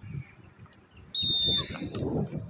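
Referee's whistle blown once, a shrill steady note of about half a second, signalling the server to serve. Voices of players and onlookers murmur underneath.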